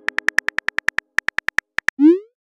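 Smartphone on-screen keyboard typing clicks, a quick run of about eight clicks a second with a brief pause midway.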